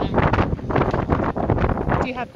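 Wind buffeting the microphone, a loud, uneven noise that comes and goes in gusts.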